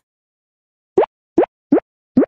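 Logo-animation sound effect: after about a second of silence, three short bloop-like pops come in quick succession, about 0.4 s apart, each rising quickly in pitch.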